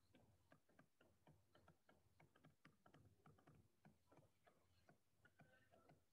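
Near silence with faint, irregular ticks of a stylus tip tapping and sliding on a tablet screen as words are handwritten.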